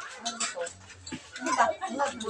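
Indistinct talk from several people in a crowded room, with louder voices in the second half.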